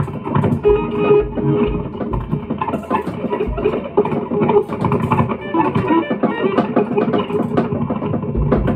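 Hollow-body electric guitar through a small amp and a drum kit playing together live. A busy, unbroken stream of guitar notes runs over scattered drum hits, with low drum thumps every second or so.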